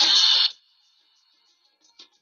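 A loud breathy exhale, about half a second long, then near silence.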